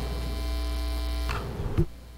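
Electrical mains hum with a buzzy row of overtones in the chamber's sound system. It cuts off after about a second and a half, followed by a single short thump.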